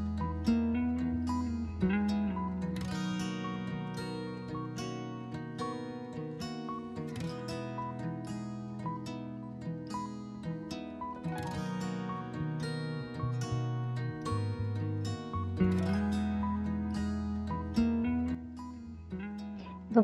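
Background instrumental music led by plucked strings over a low bass line.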